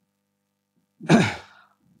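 A man's single short, breathy exhale through the voice, starting about a second in and falling in pitch as it fades.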